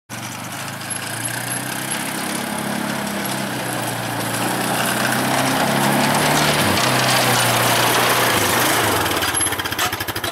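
ATV engine running as it is driven, growing louder as it comes closer. Its pitch dips briefly and picks up again about two-thirds of the way through.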